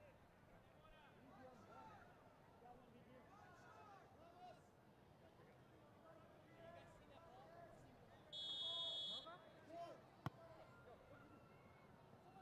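Faint, distant voices of players and spectators around the pitch. About eight seconds in comes one short referee's whistle blast of about a second, signalling the corner kick, followed shortly by a single sharp tap.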